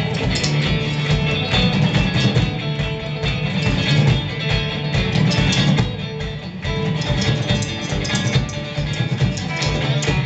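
A live band playing without vocals: electric bass and a drum kit, with steady drum hits under the bass line.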